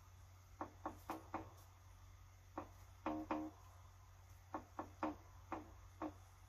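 Trap-soul bass line played with a muted-guitar pluck sound: short, clipped notes in little runs of three to five, fairly quiet.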